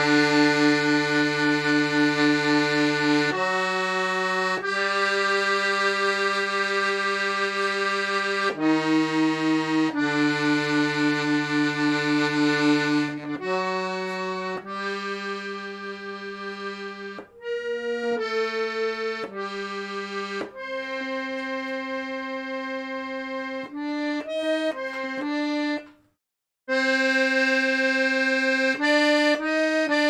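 Piano accordion played solo, holding slow sustained chords and melody notes that change every second or few seconds as the passage is worked out note by note. The playing stops briefly about 26 seconds in, then picks up again.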